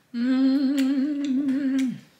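A woman's long closed-mouth "mmm" of enjoyment while tasting food, held for nearly two seconds with a slight wobble in pitch and dropping off as it ends.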